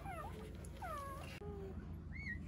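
Newborn golden retriever puppies squeaking and whimpering while they nurse. There are two high squeaks that fall in pitch, one at the start and one about a second in, then a short, lower squeal.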